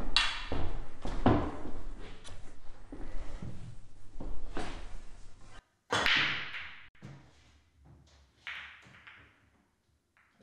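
A few footsteps and knocks, then about six seconds in an English pool break: the cue strikes the cue ball, which crashes into the racked pack and sends the balls clattering apart for about a second. A fainter clack of balls follows a couple of seconds later.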